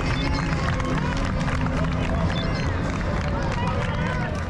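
Wind buffeting a bike-mounted camera's microphone while riding at speed, with spectators' voices and calls from the roadside.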